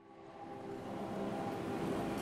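Steady background noise with a low hum fades in over about the first second and then holds level.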